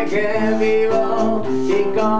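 Live acoustic band music: a nylon-string classical guitar strummed, with a sustained melody line held over it between sung lines.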